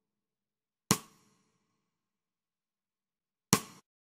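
Two single sampled drum hits played back from a drum track in the mix, about two and a half seconds apart, each sharp with a short fading tail and dead silence between them.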